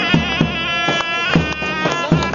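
Music of a reedy, buzzing wind instrument playing a sustained melody over regular deep drum beats about every half second.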